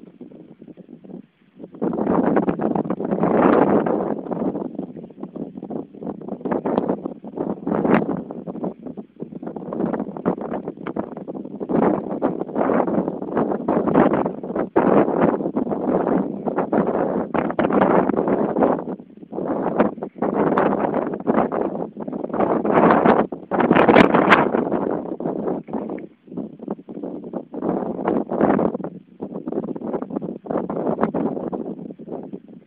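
Wind buffeting the microphone in uneven gusts, with a few brief clicks.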